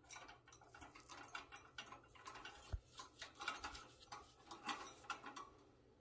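Cockatiel moving about its wire cage: faint, irregular clicks and taps of beak and feet on the bars and perch, with one soft thump midway.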